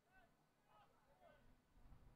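Near silence: faint open-air ambience of a football pitch, with only very faint distant sounds.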